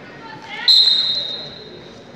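Referee's whistle: one long, high blast that starts sharply under a second in and fades over about a second, signalling the wrestlers to resume the bout.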